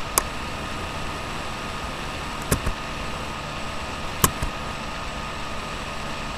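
Steady background hiss with a faint hum, broken by a few sharp clicks, the loudest about four seconds in.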